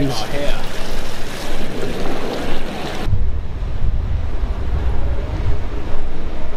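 Wind buffeting the microphone: a broad rushing noise that turns abruptly to a low, fluctuating rumble about halfway through.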